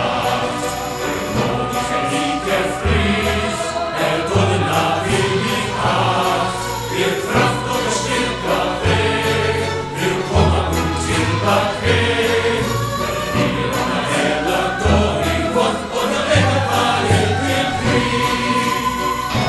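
Live rock-opera number: a group of voices singing together over electric guitar and a band with a steady beat and low notes shifting every second or so.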